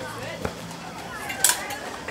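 Two sharp metallic clicks about a second apart, the second brighter: smallsword blades touching as the fencers engage. Faint voices of onlookers underneath.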